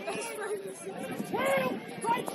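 Voices calling out on a football pitch during play: a short shout at the start and another about a second and a half in, over faint background chatter.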